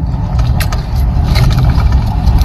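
Steady low rumble inside a car, with a few short crackles about half a second and a second and a half in.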